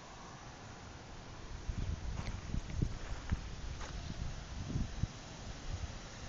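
Someone walking outdoors with the phone: irregular low thumps and scuffs from the steps and the phone being moved, starting about two seconds in, with a few faint clicks.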